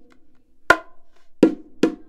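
Bongos struck by hand in a sparse groove with no ghost notes between the strokes: three sharp strokes with a short ringing tone, the first just under a second in and the other two close together near the end.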